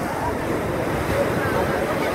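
Rough sea surf breaking and washing up over a concrete sea wall: a steady rush of water, with faint voices mixed in.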